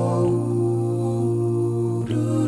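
Five-voice male a cappella group holding one sustained wordless chord over a steady low bass note.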